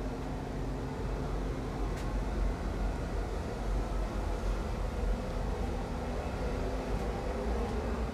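Low, steady rumble of handling and footfall noise on a handheld camera's microphone as it is carried at walking pace, with a faint click about two seconds in.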